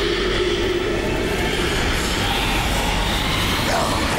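Loud, steady rumbling drone of horror-film sound design, with a higher whooshing swell building over the second half and a brief gliding sweep near the end.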